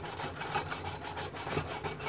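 Pumice stone scrubbing baked-on grime off a chrome stove drip pan soaked with oven cleaner, in quick, even back-and-forth strokes.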